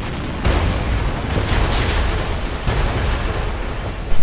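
Bomb explosion sound effect: a sudden blast, then several seconds of deep rumbling with a few sharper cracks.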